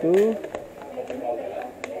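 Mostly speech: a man's voice in a small room, loudest at the start, with a single sharp click near the end.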